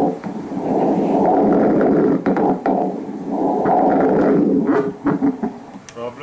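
Spectral Doppler audio from an ultrasound scanner: the rushing noise of blood flow sampled in a vascular mass, loud and coming in two long surges, then weakening near the end, with a few short clicks.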